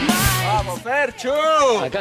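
Rock music background with electric guitar ends within the first second, then a man's voice calls out loudly in long, rising-and-falling shouts of encouragement.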